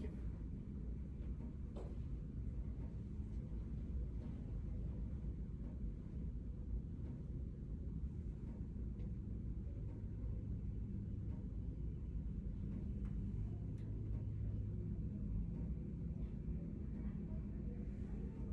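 Steady low room hum and rumble with no distinct events.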